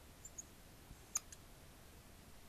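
Mostly quiet room tone with a few faint clicks from a marker tip touching and drawing on the board, the sharpest one just past the middle followed by a weaker one.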